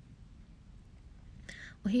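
A short pause in a young woman's talk with low room noise, then a quick audible breath in about one and a half seconds in, and her voice starting again near the end.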